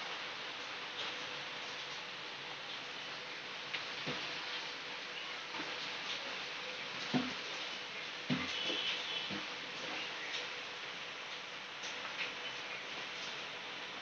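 A steel ladle stirring thin custard sharbat as it simmers in a steel pot, over a steady quiet hiss. A few scattered clicks come from the ladle knocking against the pot.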